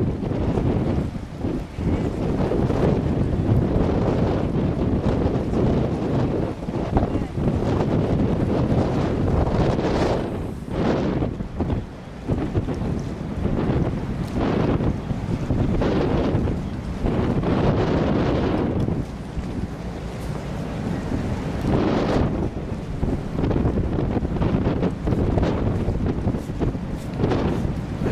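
Wind buffeting the microphone in gusts, a loud rumbling rush that swells and dies away irregularly.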